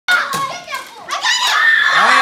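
Children's high-pitched voices shouting and calling out while playing, loud right at the start and again from about a second in.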